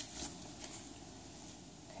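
Quiet room tone with a faint click at the start and a couple of light handling noises in the first second, then only a low steady hiss.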